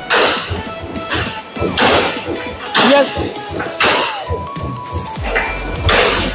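Hammer blows on a chisel held against punched sheet steel, knocking the cut-out parts free of the sheet: sharp metallic strikes with a brief ring, about one a second. Background music plays under them.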